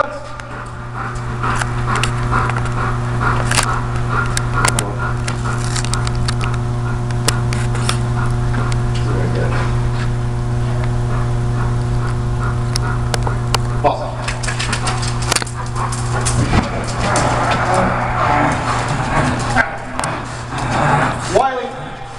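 A steady low hum with overtones runs under a German Shepherd barking at intervals, with scattered sharp clicks. The hum's upper tones drop out about two-thirds of the way through.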